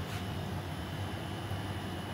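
Steady low machine hum with a faint hiss.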